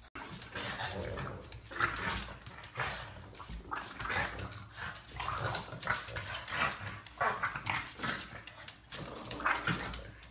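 French bulldogs growling and grunting at each other in short, irregular bursts.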